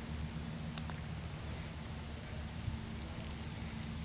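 Faint click of a putter striking a golf ball about a second in, over a quiet outdoor background with a steady low hum.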